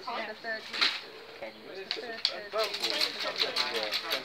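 People talking, with scattered sharp clicks from a knife shaving and splitting a stalk of giant cane (Arundo donax).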